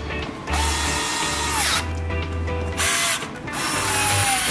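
Power screwdriver with a Phillips bit running in short bursts, its whine dropping in pitch as each burst stops, as it backs out the screws of the air filter housing.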